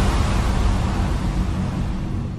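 Low rumbling whoosh of a channel-logo sound effect, slowly fading.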